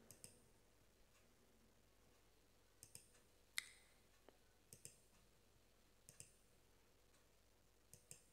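Faint computer mouse clicks, each a quick double tick of the button pressing and releasing, about six of them at irregular intervals.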